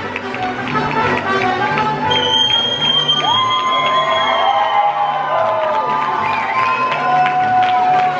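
A mariachi band playing live: trumpets, violins, guitar and guitarrón, with long held notes over a steady strummed and plucked bass rhythm.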